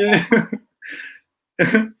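Two people laughing over a video call: short voiced bursts of laughter, a brief breathy exhale about a second in, and a laughing "yeah" near the end.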